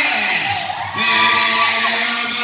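Voices calling out loudly during basketball play, one of them holding a long steady call in the second half.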